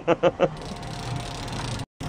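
A man laughing in quick bursts that stop about half a second in, followed by a steady background noise with a faint hum, broken by a brief dropout just before the end.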